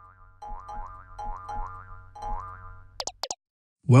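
Cartoon-style logo sound effect: a bouncy run of short pitched notes, each bending upward in pitch, repeating for about three seconds, followed by three very quick high chirps. A synthesized narrator's voice starts right at the end.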